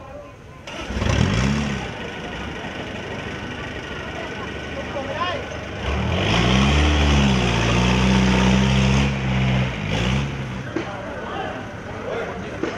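Truck engine revving: its pitch rises and falls back about a second in, then climbs again around six seconds in, holds steady at raised revs for a few seconds and drops away near ten seconds.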